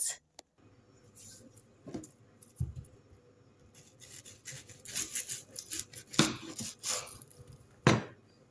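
Kitchen knife slicing an onion on a wooden cutting board: crisp cuts and knocks of the blade on the board. They come thick from about halfway in, with the loudest knock at the very end.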